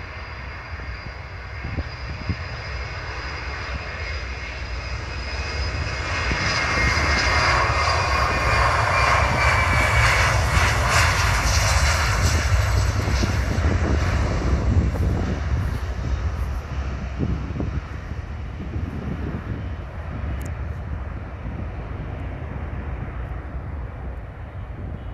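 BAe 146-200 jet's four Lycoming ALF502 turbofan engines at takeoff power as the airliner rolls past and climbs away. The sound swells over several seconds, with a whine that falls in pitch as it passes, then fades into a lower rumble.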